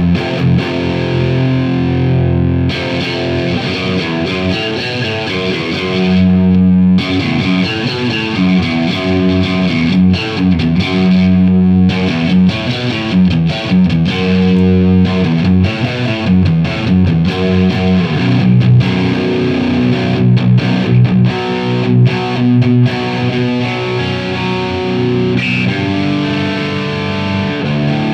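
Jackson Pro Plus Dinky DK Modern EverTune 7 seven-string electric guitar with Fishman Fluence pickups, played through the overdrive (OD1) channel of a Marshall JVM410H amp: a heavy distorted riff on the low strings, with many sudden stops between picked notes and some held notes.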